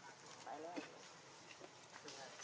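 A macaque giving a short, soft call whose pitch rises and falls, about half a second in, over faint scattered clicks.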